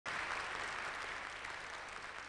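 Audience applauding, the clapping easing off a little toward the end.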